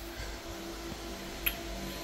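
Steady hum of computer cooling fans from running mining hardware, with a single sharp click about one and a half seconds in.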